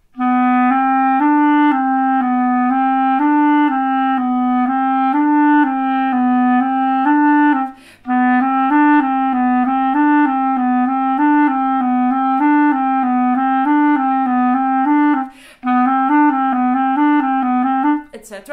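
Solo clarinet playing a fast, repeating finger exercise that shuttles among a few low notes, the kind of drill used to train the little-finger keys. It runs in three phrases with two short breaks.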